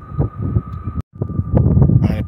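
Wind buffeting a phone microphone outdoors, a rough low rumble that swells in the second half, with a thin steady high tone running under it. The sound cuts out for an instant about a second in.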